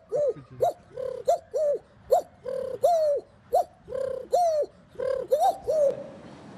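A man's voice imitating bird calls: a quick run of short, arching hoots, a few a second, some drawn out a little longer.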